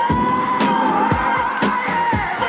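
Electronic dance music from a DJ set: a steady four-on-the-floor kick drum about twice a second with hi-hats, under one long held high synth note that wavers slightly in pitch.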